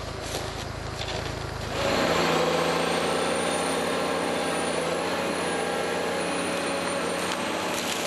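Forest harvester's diesel engine running, a low hum at first that turns louder and steadier about two seconds in, with a faint high whine over it.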